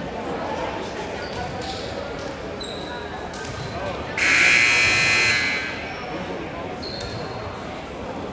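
Gym buzzer sounding once for about a second and a half, about four seconds in, as the players return to the court from a timeout huddle. A volleyball bouncing on the hardwood and brief shoe squeaks are heard around it.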